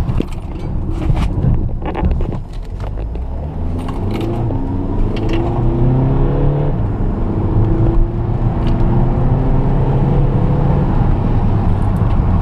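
2012 Volkswagen Jetta's 2.0-litre four-cylinder turbodiesel heard from inside the cabin, accelerating at full throttle back up to about 40 mph, with a few knocks in the first couple of seconds. The engine note climbs, drops as the DSG gearbox shifts up about seven seconds in, then climbs again. This full-throttle pull after a near-stop is the last step of the DSG basic-settings adaptation drive after a clutch-pack replacement.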